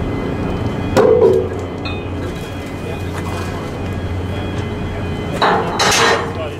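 Steady low hum of machinery running, with a single sharp knock about a second in and a louder burst of noise near the end.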